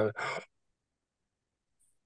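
A man's short, breathy sigh lasting about half a second, followed by dead silence.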